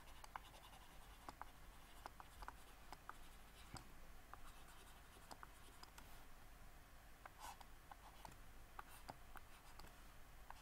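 Near silence with faint, irregular taps and light scratches of a stylus on a drawing tablet.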